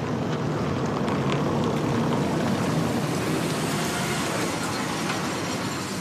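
Ford Mondeo driving slowly over cobblestones and pulling up, a steady rumble of tyres on the cobbles and engine that eases off near the end as the car stops.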